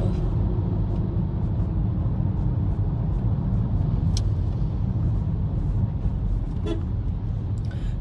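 Steady low rumble of car noise with no speech over it, and a brief click about four seconds in.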